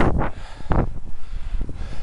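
Wind buffeting the microphone of a camera on a moving bicycle, with two strong gusts in the first second over a steady low rumble.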